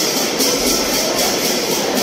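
Dense crowd noise in a packed temple hall: many voices at once blending into a steady wash, with no single voice standing out.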